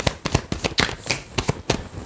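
A tarot deck being shuffled by hand: a quick, irregular run of card clicks and slaps.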